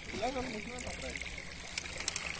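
Water splashing and lapping at the side of a small boat, with a hooked fish breaking the surface and a few short sharp splashes near the end. A faint voice is heard in the first second.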